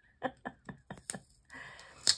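Light clicks and taps of small plastic diamond-painting drill containers and resealable bags being handled, then a brief rustle near the end.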